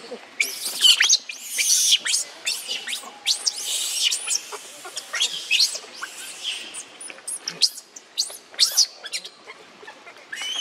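Newborn macaque crying: a rapid run of short, shrill, high-pitched squeals and screeches with brief pauses.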